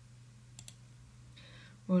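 Two faint clicks of computer input, about half a second in, over a steady low hum, as a slide is being edited; a voice says "Well" just before the end.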